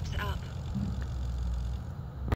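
A last spoken word trailing off, then a steady low rumble of wind on the microphone.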